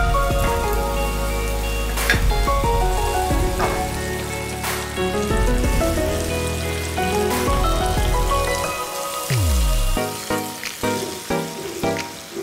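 Whole marinated chicken frying in hot oil in a pan, sizzling as it browns, under background music.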